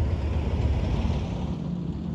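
A steady low rumble with a hiss above it, the sound of strong wind buffeting a phone's microphone outdoors.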